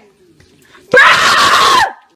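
A person letting out one loud, harsh scream about a second in, lasting just under a second.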